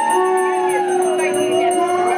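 Long held conch-shell notes and wavering, howl-like ululation during temple worship, over a quick steady rhythm of metallic ringing from bells or cymbals.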